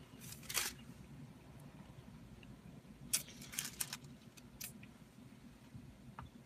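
Faint handling noise: a few short clicks and rustles, one group about half a second in and a cluster between three and five seconds in, over a low steady hum.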